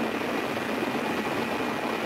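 A steady rushing noise like static, with a faint high steady tone running through it.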